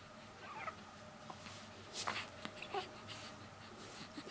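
Newborn baby making a few faint short squeaks, each falling in pitch, with a soft click about two seconds in.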